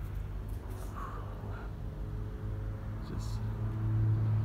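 A low steady hum that grows louder toward the end, with a few faint short sounds about one and three seconds in.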